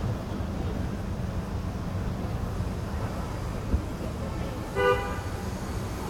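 Steady city street bustle with a low traffic rumble, and a single short car horn toot about five seconds in.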